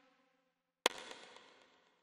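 A single synth lead note from the ReFX Nexus plugin, previewed as it is placed in the piano roll: it sounds once with a sharp attack about a second in and dies away within about a second. At the start, the decaying tail of the previous preview note fades out.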